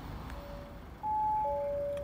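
An electronic chime of pure, steady tones: a short lower note, then about a second in a longer higher note, with the lower note sounding again beneath it.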